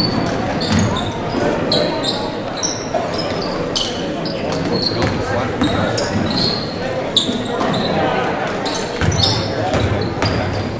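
A basketball being dribbled on a hardwood gym floor, with frequent short squeaks of sneakers, over the steady chatter of spectators in a large, echoing gym.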